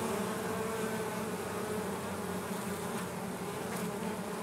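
Honeybees buzzing in a steady hum from a small swarm clustered on the ground around its queen, stirred up by digging through the pile.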